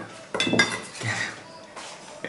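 A metal spoon clinking and scraping against stainless steel dishes, with a sharp ringing clink about a third of a second in and a fainter knock near the end.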